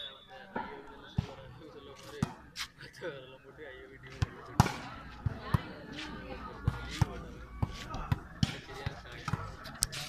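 Volleyball being struck during a rally: a dozen or so sharp slaps and knocks at irregular intervals, the loudest a little before halfway, over spectators' chatter.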